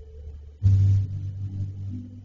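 A sudden loud, deep thump just over half a second in, followed by a low rumble that fades away, over a steady low hum.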